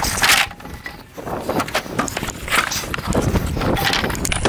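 Wooden pallets knocking and scraping as they are pulled off a pile and moved across asphalt, in a few separate bursts, the loudest just after the start.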